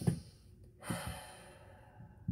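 A woman's sigh: one long breath out starting about a second in and fading away.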